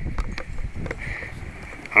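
Wind buffeting the microphone outdoors, an uneven low rumble with a few light clicks from handling.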